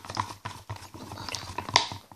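Scattered light clicks and taps of hands handling clear plastic cups on a table, with a sharper click near the end.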